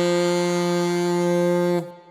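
Saxophone holding one long, low final note after a quick run, stopping sharply just before two seconds in, with a brief fading tail.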